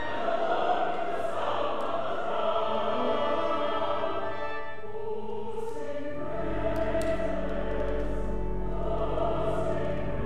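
Mixed church choir singing with pipe organ accompaniment. About six seconds in, the organ's deep pedal bass comes in and sustains under the voices.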